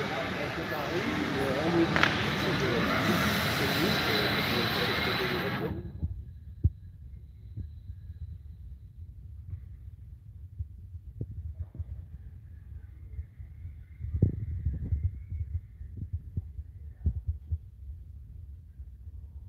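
Sports-hall ambience at a power wheelchair football match: a loud wash of noise with voices in it for about the first six seconds, cutting off abruptly. After that, a low hum with scattered dull knocks.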